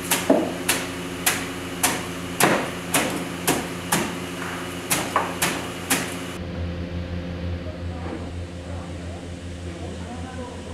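A cleaver chopping beets in a wooden box: about a dozen sharp chops, roughly two a second, stopping about six seconds in. A steady low hum follows.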